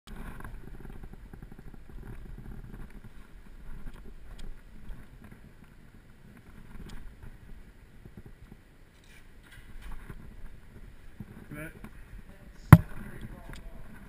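A bicycle being handled and moved by hand: low rumbling and scattered light clicks and rattles, with one sharp, loud knock near the end.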